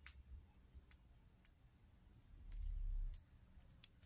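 Handling noise from a phone: about six sharp, scattered clicks and a brief low rumble about two and a half seconds in as the phone is moved in close.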